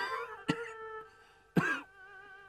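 A gravely ill old man coughing in three short bursts: one at the start, one about half a second in and one near the end, with soft violin music underneath.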